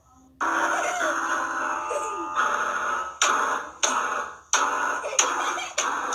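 An electronic keyboard with several notes sounding together, struck by a dog pressing the keys. It starts abruptly about half a second in, and new clusters of notes are jabbed out every second or less.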